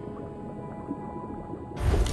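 An online slot game's steady background music plays. Near the end a loud game sound effect with a deep thump bursts in as a treasure chest is picked in the bonus round.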